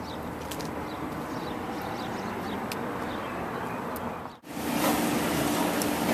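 Steady outdoor traffic noise, with a few faint clicks. About four seconds in it cuts sharply to indoor room noise with a steady hum.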